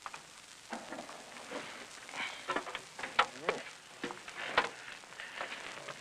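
Scattered light knocks and clicks of a man climbing the steps into the cab of an International Harvester 2+2 tractor, over a steady hiss.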